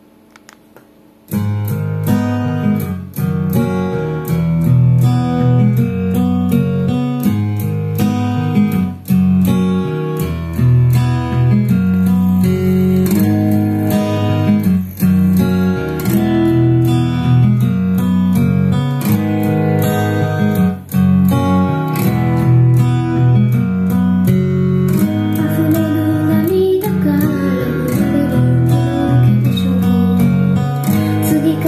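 Recorded music played back through a two-way bookshelf speaker, driven by a kit preamp/buffer built on NE5532 dual op-amps under test. The music starts suddenly about a second in and runs on with a strong, moving bass line.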